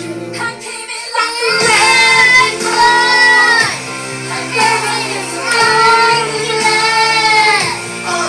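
A young child singing karaoke over a music backing track, with long held notes. The singing comes in about a second in.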